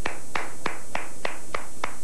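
One person clapping slowly and evenly, about three claps a second, seven in all: sarcastic applause.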